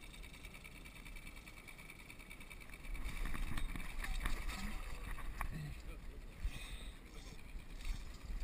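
Water splashing as a hooked sockeye salmon is scooped into a landing net at the surface and lifted from the water, louder from about three seconds in, with a few sharp clicks. Before that, a low steady rumble.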